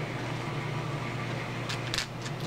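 A steady low hum runs under faint rustling from the wrapping of a small toy surprise capsule being handled, with a few short crinkles near the end.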